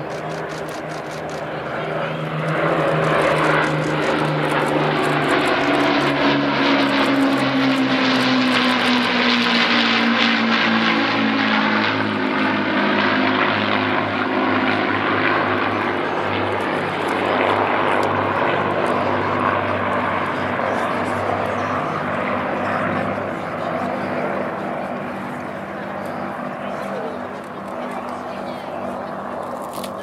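Avro Lancaster bomber, Hawker Hurricane and Supermarine Spitfire flying past in formation, their Rolls-Royce Merlin piston engines droning. The sound swells, drops in pitch as the aircraft pass, then slowly fades.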